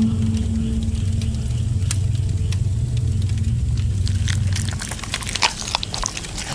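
Low, sustained drone of a horror-film soundtrack with scattered crackles and clicks over it. The drone fades about five seconds in as the crackling thickens.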